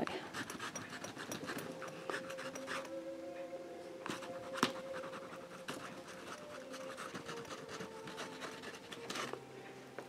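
Oil pastel stick scratching across stretched canvas in short, irregular strokes, with a sharper tap about four and a half seconds in. A faint steady tone sounds underneath.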